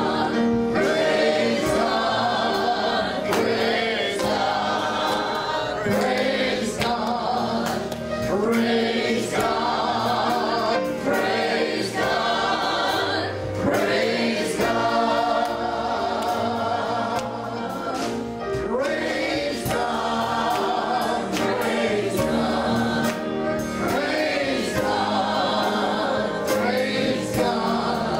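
Gospel song sung by several voices together over instrumental accompaniment with a steady beat.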